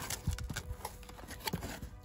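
A cardboard shipping box being handled and its flaps opened by hand: scattered light rustles, taps and small knocks of cardboard.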